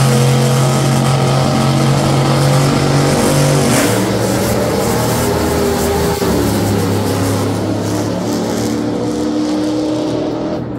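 Two Top Fuel dragsters' supercharged nitromethane V8s running at the starting line, then launching about four seconds in and racing away down the track, the sound slowly fading as they go.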